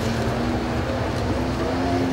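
Steady outdoor rumble of street traffic, with faint voices mixed in.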